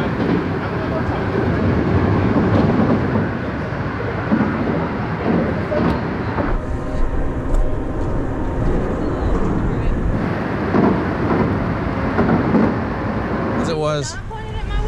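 Loud, steady rumble of heavy traffic crossing the bridge overhead, with faint voices underneath.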